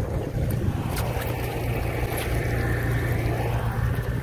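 Steady low motor drone with a noisy hiss over it.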